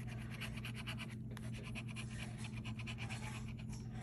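A scratch-off lottery ticket's coating being scraped off with a scratching tool, in rapid repeated short strokes.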